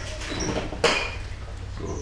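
A ceramic bonsai pot being turned by hand on a table: a brief high squeak, then a single sharp knock a little under a second in.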